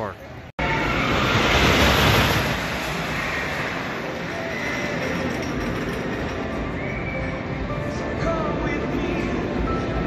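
Wooden roller coaster train rumbling along its track, starting abruptly about half a second in and loudest a second or two later, then settling into a steady rumble with faint riders' voices over it.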